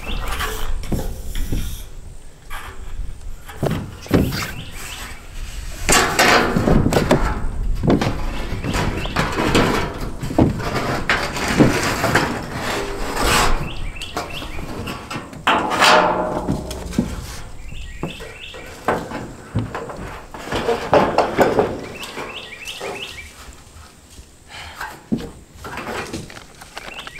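Ribbed metal roofing panel being handled: the sheet flexes, wobbles and knocks irregularly as it is carried and set down onto the roof battens, with louder clatters about six, ten to thirteen and sixteen seconds in.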